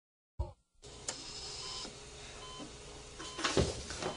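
Operating-room heart monitor beeping in short electronic tones a little under a second apart, over a steady hiss, with a louder low thump near the end.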